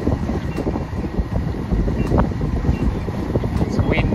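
Wind buffeting the microphone aboard a sailing catamaran making way through choppy water: a steady, rough low rushing noise.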